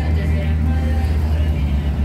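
Street traffic: the low, steady engine rumble of nearby road vehicles, with voices faintly in the background.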